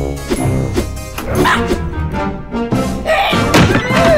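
Cartoon background music with several comic thuds, and a cartoon parrot's squawking cries over it, the loudest near the end.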